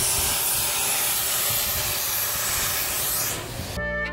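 Durango & Silverton K-28 2-8-2 steam locomotive No. 480 venting steam with a loud, steady hiss, cut off abruptly near the end.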